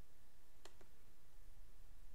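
Computer mouse clicking twice in quick succession, a fraction of a second apart, over a faint steady room hum.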